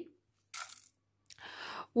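Dry black tea grains scooped by hand and dropped into a metal saucepan: two short dry rattles of grains, the second longer.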